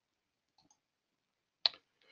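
Near silence broken by one short, sharp click about one and a half seconds in.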